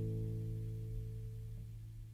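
The last strummed acoustic guitar chord of the song ringing out and slowly dying away.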